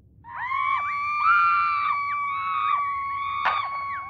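Screaming heard through a telephone earpiece, thin and tinny: one held, steady scream with several shorter wailing cries rising and falling over it. A sharp crackle comes near the end.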